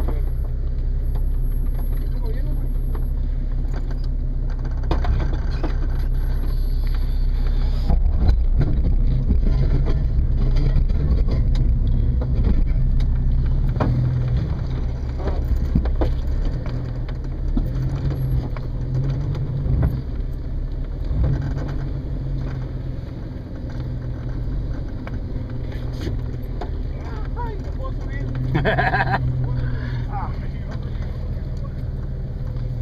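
Jeep Cherokee XJ engine running at low speed while crawling over a rocky trail, with scattered knocks from the rocks under the vehicle.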